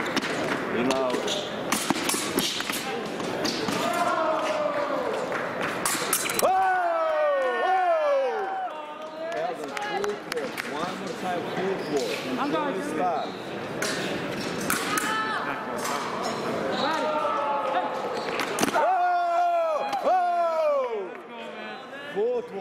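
Sabre fencing: sharp clicks of blades meeting and thuds of stamping footwork on the piste, over the chatter of a large hall. Two loud shouts falling in pitch, about six seconds in and again near the end, come as touches are scored.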